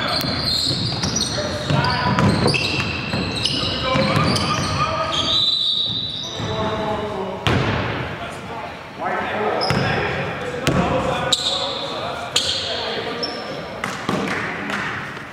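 Basketball game in a gym: the ball bouncing on the hardwood court, with players and spectators calling out and several sharp knocks in the second half, all echoing in the large hall.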